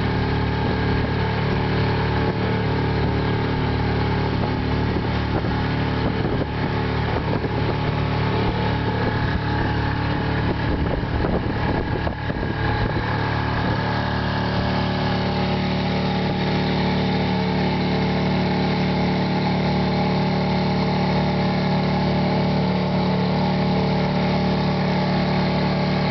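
A sailing keelboat's engine running steadily under way, driving the boat against an incoming tide at about four and a half knots.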